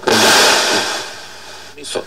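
Valve radio's loudspeaker giving a burst of loud hiss between stations as the tuning knob is turned. The hiss starts suddenly and fades over about a second.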